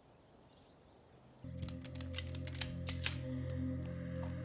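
Quiet for about the first second and a half, then a low, sustained musical drone of several held tones comes in suddenly, with irregular sharp clicks scattered over it.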